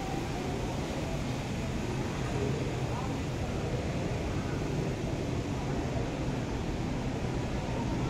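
Indoor shopping-centre ambience: a steady hum of ventilation with faint, indistinct voices.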